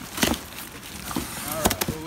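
A taped cardboard moving box being pulled open by hand, its flaps and packing tape tearing and knocking in a few sharp rips: one about a quarter second in and two close together near the end.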